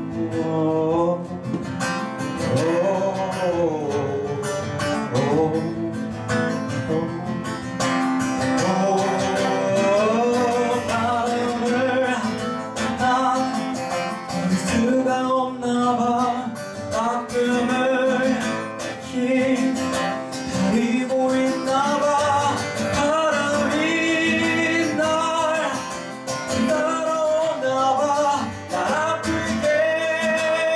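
A man singing a Korean song live into a microphone, accompanying himself on a strummed acoustic guitar.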